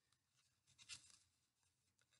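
Near silence, with a faint, brief rustle about a second in from ribbon being worked through the string warp of a cardboard loom.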